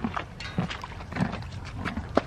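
A horse moving close by: irregular soft knocks and rustles.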